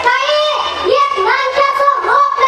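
A girl's high-pitched voice declaiming passionately through a microphone and PA, in a sing-song delivery with long held, bending pitches.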